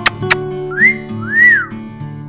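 Background music with plucked guitar notes over a steady bass. About a second in, two whistled glides sound over it: the first rises and holds, the second rises and falls away.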